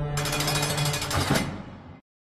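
Outro logo sting: a held low synth drone, then, just after it begins, a burst of rapid buzzing glitch static that lasts just over a second. It fades out to silence.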